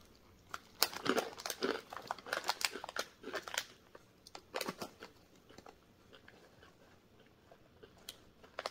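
Crunchy fried corn kernels (Cornick) being bitten and chewed. A quick run of sharp crunches over the first few seconds, a few more about halfway, then quieter chewing.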